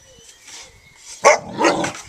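A dog barks twice a little over a second in, the second bark longer than the first.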